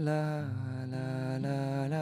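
A man singing a long held 'la' note of a slow chant, stepping down to a lower note about half a second in, over a soft acoustic guitar accompaniment.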